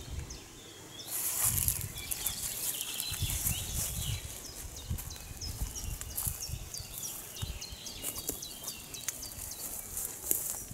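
Footsteps and the rustle of leafy plants as someone walks slowly through a flower bed, getting louder about a second in, with short high chirps repeating in the background.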